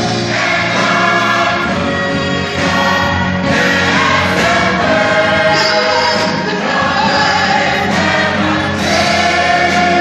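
A large church choir of men and women singing a gospel song together.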